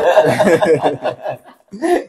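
Two men laughing together, loudest in the first second, then dying away.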